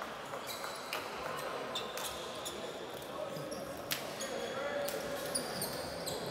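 Basketballs bouncing on a hardwood court with sharp, scattered thuds, mixed with short high-pitched sneaker squeaks and voices murmuring in a large sports hall.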